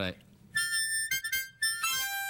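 Harmonica playing: a few short notes and chords starting about half a second in, then a long held chord near the end.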